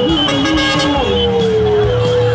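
Vehicle horns sounding in long held blasts over street traffic, with rising-and-falling siren wails behind them.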